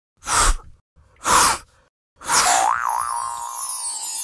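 Cartoon sound effects for an animated logo intro: two short whooshes, then a sparkly falling shimmer with a wobbling whistle-like boing.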